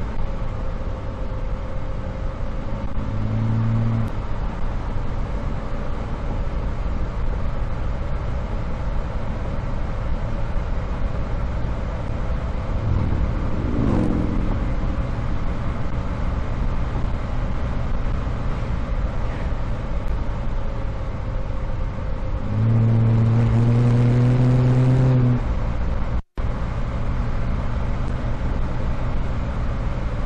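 A 1965 Chevrolet Corvair's rear-mounted, air-cooled flat-six engine running while the car is driven along a winding road, mixed with continuous road and wind noise, picked up by a microphone outside the car. A steady droning hum comes in briefly about three seconds in and again, louder, for about three seconds near the end.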